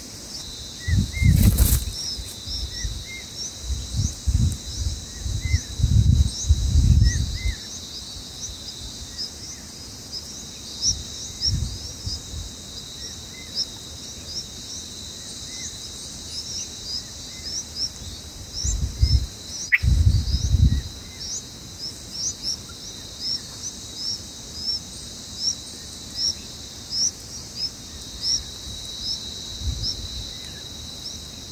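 Outdoor ambience: a steady high insect drone with short, high rising chirps repeating about twice a second. A few low rumbling gusts come through, the strongest about a second in, around five to seven seconds in, and again about two-thirds of the way through, where there is also a single sharp click.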